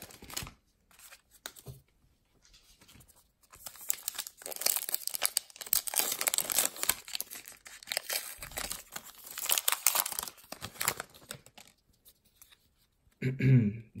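A sealed baseball card pack being torn open and its crinkly wrapper worked by hand: a crackling, rustling tear that runs for several seconds through the middle, softer at the start. A throat-clear near the end.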